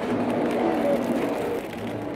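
Steady hum and background noise of a convenience store interior, with a few faint knocks from the camera being moved.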